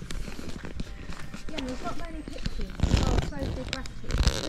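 Footsteps of people walking on a muddy woodland track, with faint low voices. A short, loud rumbling blast hits the microphone about three seconds in.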